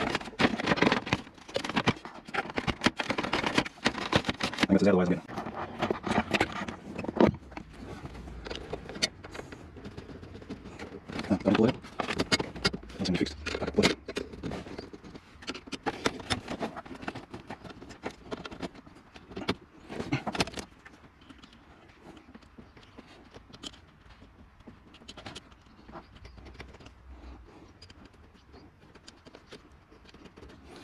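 Scattered clicks, knocks and scrapes of hand tools and plastic dash trim being worked loose, with a man's voice talking at times. The sound is quieter and sparser over the last third.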